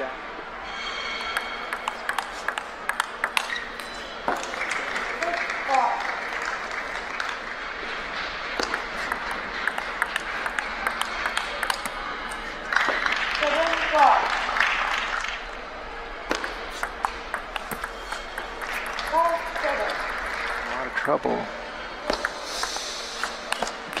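Table tennis ball clicking in quick sharp strikes off paddles and table during rallies, in a large reverberant hall. A swell of applause comes about halfway through, and brief voices rise between points.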